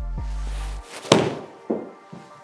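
An iron club striking a golf ball: one sharp crack about a second in, after a rising whoosh, followed by a softer knock. Background music plays at first and drops out just before the strike.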